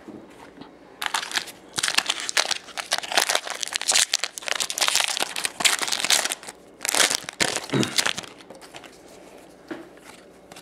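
Foil wrapper of a trading-card pack crinkling and tearing in the hands as it is opened, a dense run of crackles starting about a second in and dying away near the end.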